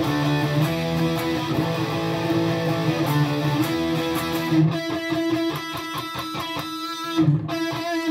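Electric guitar playing three-note power chords in the 5-7-7 fret shape. The chords ring out for about four and a half seconds, then turn into short, choppy strums about four a second.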